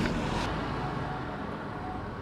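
Distant car traffic on a winding mountain road below: a steady low rumble that slowly fades.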